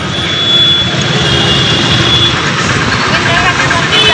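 Busy road traffic close by: cars, motorcycles and auto-rickshaw engines running and passing, heard as a loud steady rush. A thin high steady tone is held through the first half.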